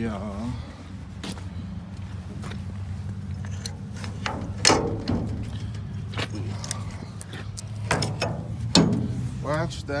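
Metal knocks and clanks from a steel dump-trailer tailgate being closed and latched, the loudest about halfway through and again near the end, over a steady low engine hum.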